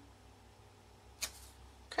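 Quiet room tone with a steady low electrical hum, broken about a second in by one brief, soft rush of noise; a voice starts right at the end.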